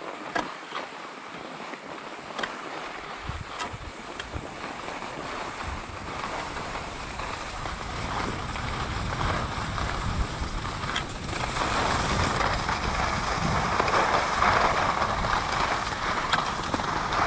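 Skis sliding and carving over groomed snow, with wind rushing on the microphone; the rush grows steadily louder as speed builds, with a few light clicks along the way.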